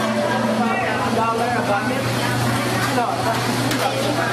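People talking indistinctly in a busy fast-food restaurant, over a steady low hum.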